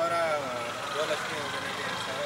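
City street traffic running steadily, with a faint voice speaking briefly near the start and again about a second in.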